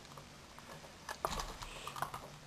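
Faint plastic clicks and handling noise as a Lego connector wire is fitted onto a Lego Mindstorms RCX brick's port, the clicks coming mostly in the second half.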